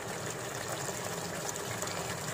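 Thin spiced gravy simmering in a pan, a steady bubbling hiss with water recently stirred in.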